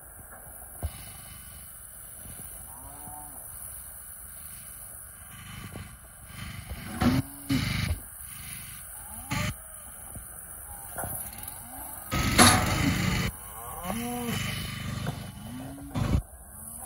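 Cattle in a hydraulic squeeze chute calling several times in short bellows, among sharp metal clanks and bangs from the chute's gates. About twelve seconds in, a loud burst of noise lasts just over a second.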